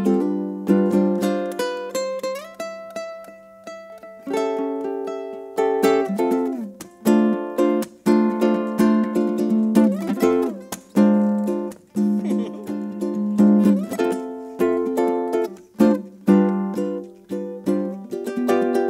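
Solo ukulele playing an instrumental passage: plucked chords and melody notes ringing out, with a few notes sliding in pitch.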